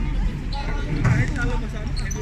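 Voices calling out during an outdoor basketball game, with a short shout about a second in over a steady low background hum.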